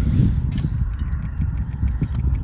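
Wind rumbling on the microphone, with the faint, steady hum of a DJI Neo mini drone's propellers in the distance.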